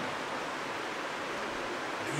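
A steady, even hiss of room background noise with no other sound.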